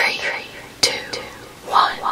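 A whispered voice in short breathy bursts, with a sharp click a little under a second in.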